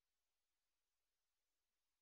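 Near silence: an extremely faint, steady hiss with nothing else.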